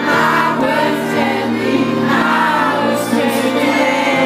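Live pop music: a male singer singing into a microphone over amplified backing music, holding sustained notes.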